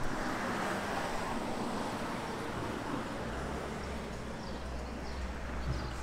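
Street traffic: the even noise of a vehicle going by, then a steady low engine rumble from about three seconds in.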